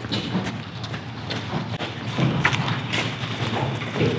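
Footsteps and irregular knocks and thumps as light airplanes are moved by hand.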